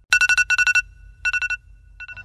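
Mobile phone alarm going off: a two-tone electronic beep repeated in quick pulses, in three short runs.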